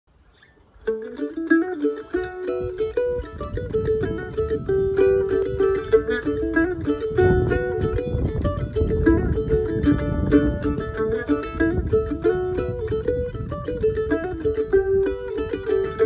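Kimble F-style mandolin played solo: a fast fiddle tune in quick runs of single picked notes, starting about a second in.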